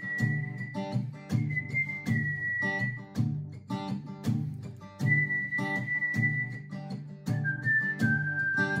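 Acoustic guitar strummed in a steady rhythm while a woman whistles a melody of long held notes, with a pause in the whistling midway through.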